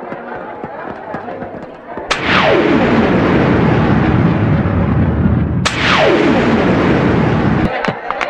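Two loud sudden booms on a film soundtrack, about three and a half seconds apart. Each carries a falling whoosh and runs on into a long heavy rumble, and the sound cuts off sharply near the end.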